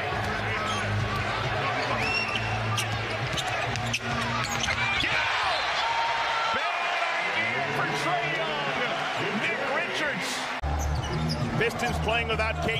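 NBA game sound from the arena floor: a basketball bouncing and sneakers squeaking on the hardwood court over crowd noise, with many short, sharp squeaks.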